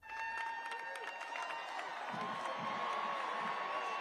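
Murmur of a large outdoor crowd, with faint distant voices and a thin steady tone held through it.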